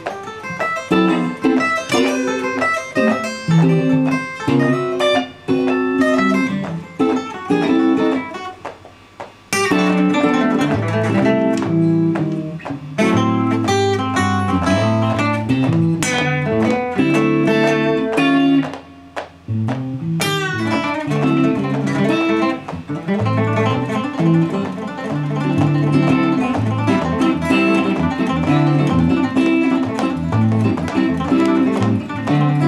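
Steel-string acoustic guitar and electric guitar playing together in an improvised jam, chords and single-note lines interweaving. The playing thins out briefly twice, around nine and nineteen seconds in, then comes back in with a sharp attack.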